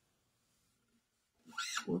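Near silence, then a man's voice exclaims "Whoops!" near the end.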